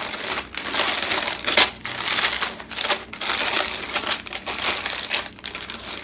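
Clear plastic poly bags of small plastic building bricks being handled and shuffled, the film crinkling continuously, with light clicks of bricks knocking together inside.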